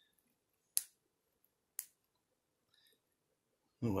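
Two sharp plastic clicks about a second apart as the launch button of a toy dragon figure's missile launcher is pressed; the gimmick is not working properly, so the missile doesn't fire.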